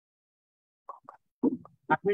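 Video-call audio cutting in and out: about a second of dead silence, then short clipped fragments of a voice that break off abruptly, as the call's sound switches over to another participant.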